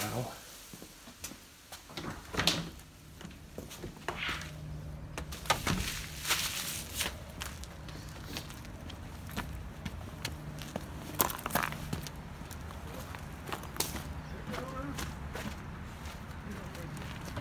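Footsteps on dirt and handheld-camera handling noise, with scattered clicks and knocks. A steady low machine hum comes in about two seconds in and continues.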